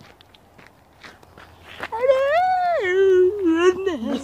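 A person's voice making one long, high ghostly 'woo' wail about halfway through, rising, then dropping lower and wavering before it breaks off. Faint footsteps before it.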